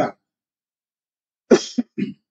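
A man coughs twice in quick succession near the end, close to the microphone.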